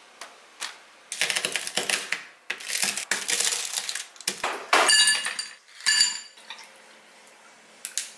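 Brittle dalgona honeycomb toffee cracking and crunching as a muddler crushes it, with crumpled parchment paper rustling. Near the end come two harder strikes with a brief metallic ring.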